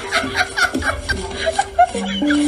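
A person snickering and chuckling in quick short bursts over background music.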